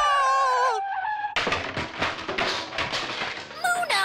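A sung note is held for about the first second. From about a second and a half in comes a clattering crash of a toy block tower toppling and the blocks tumbling, lasting about two seconds. A short vocal exclamation follows near the end.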